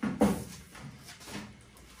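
Rummaging by hand through a metal storage box: one sharper knock of objects shifting just after the start, fading into fainter handling sounds.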